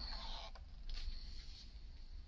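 A paper page of a spiral-bound atlas being turned and laid flat: a soft rustle of paper with two faint clicks in the first second.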